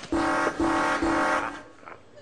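Game-show loser buzzer: three short blasts of the same low, steady tone. It signals that the caller has lost the yes/no game by saying "nein".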